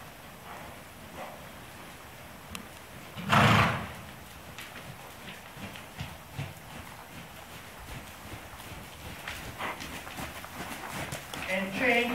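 Faint hoofbeats of a horse moving over soft indoor-arena footing, with one loud short burst of noise about three and a half seconds in.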